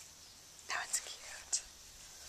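A person whispering briefly, a breathy stretch under a second in with two short hissing sounds.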